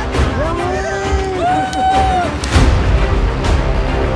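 Background music with a strong low beat. Two long pitched notes arch over it in the first half.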